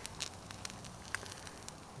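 Homemade pencil flare burning slowly, a low hiss with a few scattered sharp crackles. The slow, uneven burn is typical of a composition that might have been a little damp.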